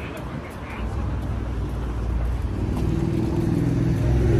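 Road traffic on the bridge: a low rumble, with a motor vehicle's engine hum building and growing louder over the last second or so.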